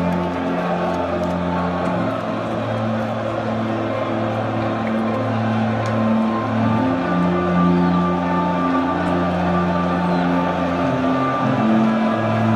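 Football supporters in the stands singing a chant together in long held notes, over the steady noise of the crowd.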